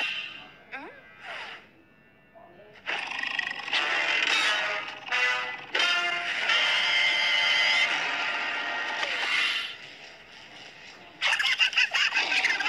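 Cartoon soundtrack: background music with wordless character vocal sounds, fading almost to silence about two seconds in, then returning loudly, dipping again near the end before a loud return.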